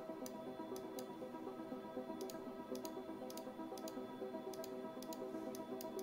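Soft background music of sustained, held tones, with irregular sharp clicks over it, some in quick pairs, typical of computer mouse clicks.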